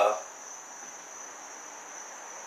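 A faint, steady high-pitched whine or trill over otherwise quiet room tone.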